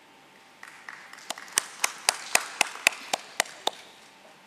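A small group applauding, starting about half a second in. One pair of hands claps louder than the rest, about four even claps a second, then the clapping stops just before the end.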